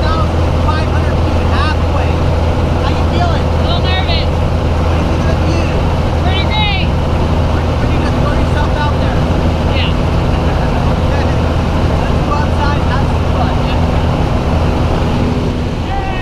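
Small jump plane's engine and propeller droning loudly and steadily inside the cabin while it climbs to jump altitude, with faint voices under the noise.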